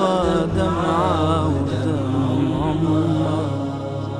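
Male voice singing a nasheed, drawing out a long melismatic line that wavers up and down in pitch over a steady low drone; the sound gradually fades toward the end.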